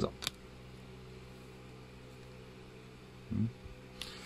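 A steady low electrical or machine hum, with one sharp click just after the start and a short low sound about three seconds in.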